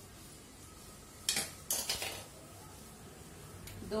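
A small steel spoon clinking against a small steel bowl as spice is scooped out: three quick clinks about a second and a half in, and a fainter one near the end.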